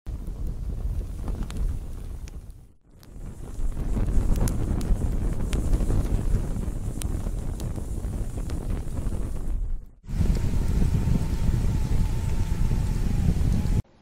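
Fire sound effect for a title sequence: flames burning steadily with scattered crackles, in three stretches broken by brief drops near 3 seconds and 10 seconds, cutting off abruptly just before the end.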